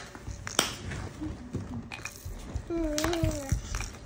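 A toddler makes one short vocal sound about three seconds in, with a few sharp clicks before it, the loudest about half a second in.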